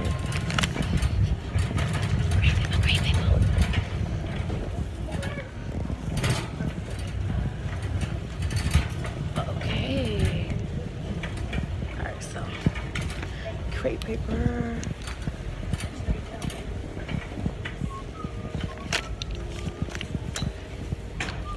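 Handling noise from a hand-held phone carried while walking: clothing rubbing and brushing against the microphone, with a low rumble that is strongest in the first few seconds and scattered clicks and knocks. Faint voices come and go in the background.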